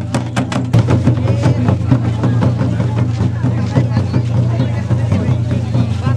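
Large nagara kettle drums beaten with sticks in a fast, even rhythm, with crowd voices around them. About a second in, the crisp strokes give way to a denser, blurred din of drumming and crowd noise.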